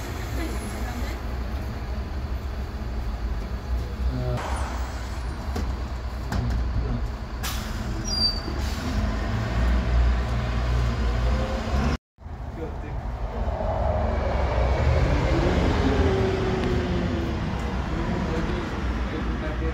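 City bus engines running: a Mercedes-Benz Citaro rumbles steadily at a stop. The sound cuts off abruptly about twelve seconds in, and another city bus's engine then grows louder as it drives away.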